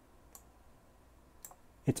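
A few faint computer mouse clicks, spaced about a second apart.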